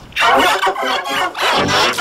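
Voice audio warped by the 'G Major' meme effect: pitch-shifted copies of the speech layered into a harsh, wavering chord. It comes in loud after a brief dip at the start.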